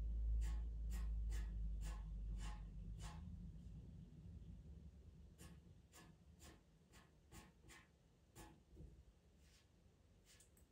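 Red pastel pencil drawing short strokes on pastel paper: faint scratches at about two a second, pausing for a couple of seconds in the middle before starting again. A low rumble sits under the first few strokes and fades away.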